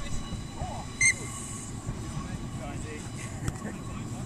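A referee's whistle blown once, a short sharp blast about a second in, stopping play for a foul. Distant players' voices and wind noise run underneath.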